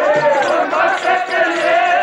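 Sikh kirtan: a voice singing a wavering melodic line over harmonium, with tabla strokes.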